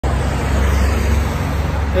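A car driving past on a city street: steady traffic noise with a strong low rumble.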